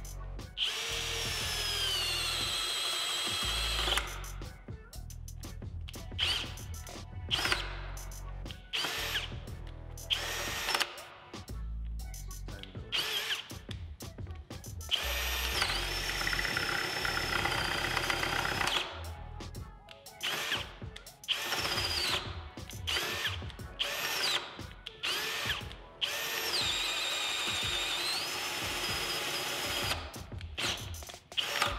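Bosch 18V cordless drill in low speed boring a one-inch Bosch Daredevil spade bit through wood with embedded nails. The motor whine runs in stop-start bursts and sags in pitch as the bit loads up on the nails. The drill keeps cutting out while the bit fights back.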